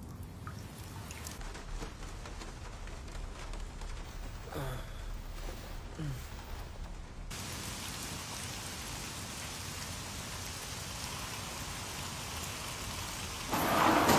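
Rain falling steadily, growing heavier and brighter about halfway through, with a brief louder swell near the end.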